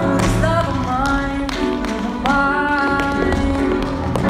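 Tap shoes striking a wooden stage in irregular quick taps during a tap dance, over a recorded pop song with a woman singing.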